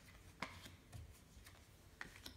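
A few faint clicks of playing cards being turned over and laid down on a table, the clearest about half a second in, otherwise near silence.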